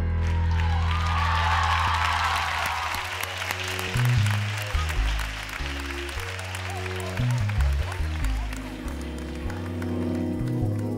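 Live pop band holding the final chord of a song under studio-audience applause. About three seconds in, the instrumental intro of the next song starts, with a stepping bass line, while the applause dies away.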